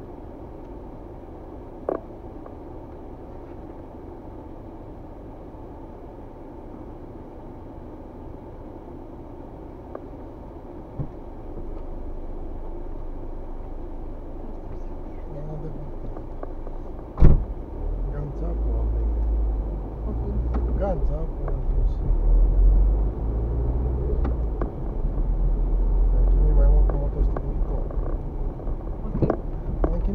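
Car cabin: the car sits stopped with a low steady engine hum, then about seventeen seconds in comes a sharp knock and the car pulls away, filling the cabin with a much louder low rumble of engine and road.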